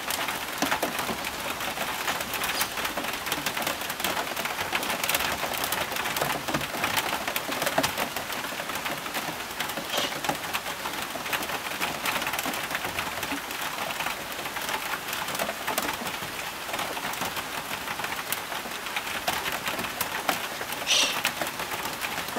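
Steady rain falling, with many sharp ticks of drops striking close by. A short, high bird call sounds near the end.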